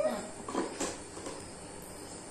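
A toddler's short wordless vocal sounds with light knocks of plastic stacking rings, about half a second in, then a quieter stretch.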